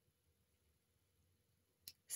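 Near silence: faint room tone in a small treated room, with one short click near the end.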